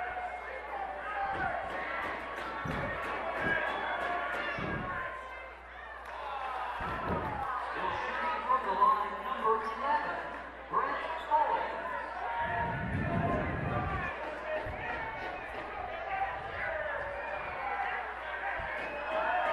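A basketball bouncing on a hardwood gym floor, several separate thumps with a run of them about two-thirds of the way in, as a player dribbles at the free-throw line. Under it is the steady murmur of voices from the gym crowd.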